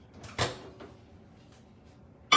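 A single sharp clunk of a microwave door being opened, with a short ring after it.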